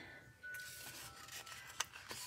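Faint rustling of hands handling a paper sticker book and picking at a sticker on its sheet, with a small click near the end.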